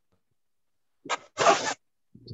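A person's short breathy laugh over a video call: two quick exhalations about a second in, after a stretch of dead silence.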